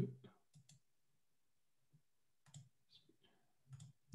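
Near silence with a few faint, short clicks from a computer mouse being clicked, in pairs about half a second in and again about two and a half seconds in, and once more near the end.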